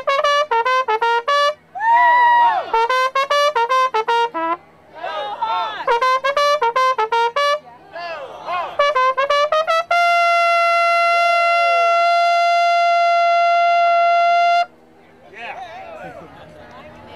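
Trumpet played loudly in four quick phrases of short, clipped notes, then one long held note of about four and a half seconds that cuts off shortly before the end.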